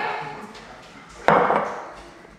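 A glass jar of juice set down on a countertop with a single sharp clunk about a second and a quarter in, after a sip from it.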